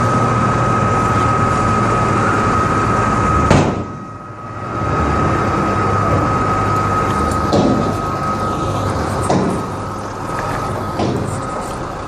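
A vehicle or machine running loudly, with a low rumble and a steady high whine, and a sharp knock about three and a half seconds in.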